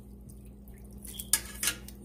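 Metal tongs clinking against a metal cooking pot: two sharp clinks in the second half, over low kitchen noise.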